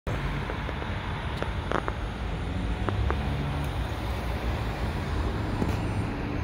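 Steady outdoor background rumble, heaviest in the low end, with a few short clicks in the first half.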